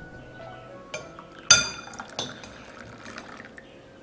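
China teacups and teapot clinking sharply three times, the loudest about a second and a half in, then tea pouring from a china teapot into a cup.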